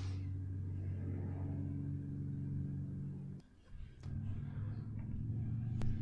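Motorbike engine running steadily in one spot: a low, steady hum that drops out briefly about halfway through and then comes back.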